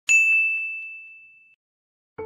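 A single bright, bell-like ding added as an editing sound effect: one strike just after the start, ringing on one clear high note and fading away over about a second and a half.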